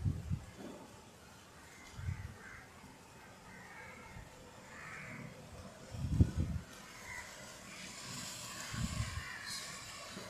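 Crows cawing repeatedly over a faint hiss, with several low bumps on the microphone; the loudest bump comes a little past the middle.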